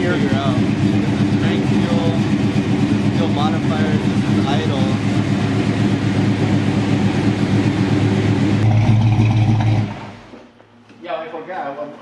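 Mopar 440 V8 in a 1968 Dodge Charger idling loudly on Edelbrock fuel injection, running rich while the idle fuel is being leaned out. Its low note swells briefly just before the sound stops about ten seconds in.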